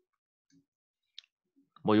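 Near silence with a couple of faint, short clicks, then a man's voice starting near the end.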